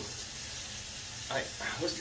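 Steady hiss, with a short spoken word starting near the end.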